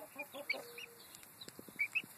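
Young chickens clucking softly while foraging: a quick run of short, low clucks in the first second, with a few short high chirps scattered through and some faint clicks about one and a half seconds in.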